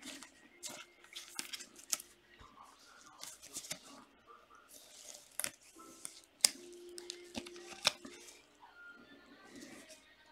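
Trading cards and a clear plastic card holder handled with gloved hands: scattered sharp clicks and light rustles of card stock and plastic, a few clicks standing out from the rest.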